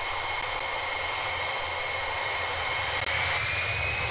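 Boeing E-3A Sentry's four TF33 turbofan engines running with a steady high whine over a low rumble. About three seconds in, the whine rises in pitch as the engines spool up for the takeoff roll.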